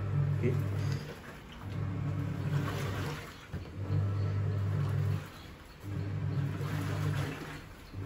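Hisense WTAR8011G 8 kg top-loading washing machine in its wash cycle: the motor hums in strokes of about a second and a half, four times, pausing briefly between them as the pulsator agitates back and forth, with water sloshing in the tub.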